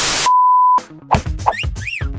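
A short burst of hiss, then a steady electronic beep at one pitch for about half a second: a reference tone at a blank gray leader frame between reels of a film workprint. About a second in, the film soundtrack resumes with music, short notes and a swooping rise and fall near the end.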